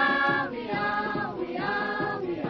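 Music: voices singing in a choir-like style, three long held notes in a row.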